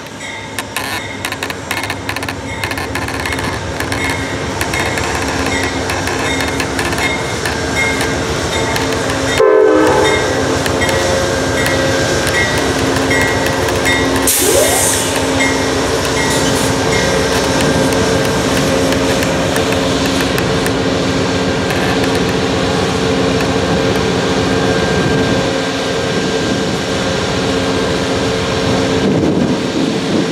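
Amtrak GE P42DC diesel locomotive arriving slowly, its engine running steadily and growing louder as it nears, with its bell ringing in even strokes that stop about halfway through. A brief hiss of air comes just before the locomotive draws level, and then the passenger coaches rumble along the rails.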